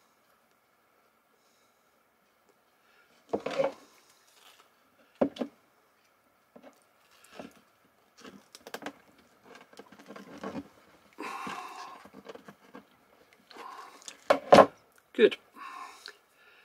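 Small handling sounds of crimping pliers and plastic-insulated crimp connectors being worked onto wires by hand: scattered clicks and knocks, with a brief rustle in the middle.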